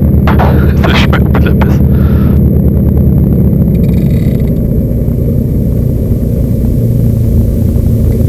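The twin piston engines and propellers of a Cessna 310Q running at low taxi power, heard inside the cockpit as a loud, steady, low drone.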